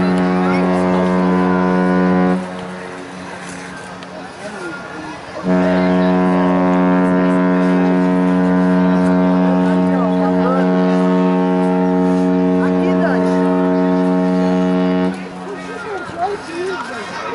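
MSC Seashore cruise ship's whistle sounding a deep, steady horn of several tones at once. One blast ends about two seconds in, and after a pause of about three seconds a long blast of about ten seconds follows: the ship's signal as she leaves port. Spectators chatter between the blasts.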